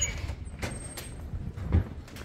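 A few footsteps on pavement, irregularly spaced, the loudest near the end, over a low steady outdoor rumble.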